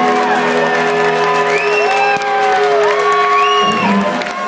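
Live psychedelic rock band's closing drone: sustained electric guitar notes that swoop and bend in pitch, with some crowd cheering underneath. Near the end the low notes drop away as the song winds down.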